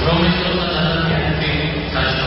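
Men's voices chanting together on long held notes, shifting pitch once or twice, typical of Georgian Orthodox prayer-service chant.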